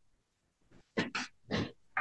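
A person clearing their throat in three or four short, separate bursts, starting about a second in.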